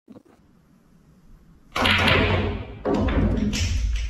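A pool cue strikes the cue ball with a sudden knock about two seconds in, then the ball rolls across the cloth with a low rumble. About a second later comes a second knock as it banks off the cushion, and the rolling rumble carries on, fading slowly.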